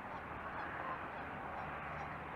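Faint honking bird calls over a steady outdoor hiss of background noise.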